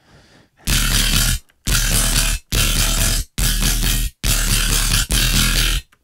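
Riddim dubstep bass synth from a Serum patch playing the drop pattern: six heavy, saturated bass notes of under a second each, separated by short gaps, over a deep sub bass.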